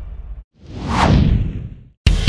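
A whoosh sound effect for an on-screen video transition: it swells up about half a second in, sweeps down in pitch and fades away. Electronic intro music cuts off just before it.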